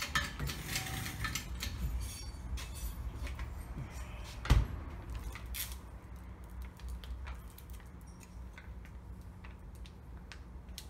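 Metal clinks and clicks of tools and parts being handled at a hydraulic shop press, busiest in the first few seconds, with one sharp knock about four and a half seconds in; fewer and quieter handling clicks follow.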